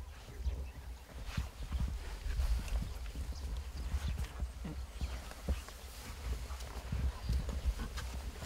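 Low rumble on the microphone of a handheld camera being carried and moved, with irregular soft knocks and clicks from handling.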